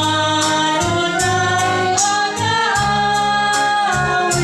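A church hymn sung with musical accompaniment: long held sung notes over a steady bass line and a regular beat.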